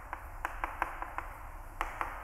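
Chalk writing on a blackboard: a string of light, irregular taps as the letters are formed.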